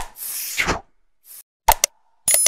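Sound effects of an animated 'like and subscribe' end screen: a sharp click, then a whoosh lasting most of a second, a faint swish, and two quick mouse clicks near the end.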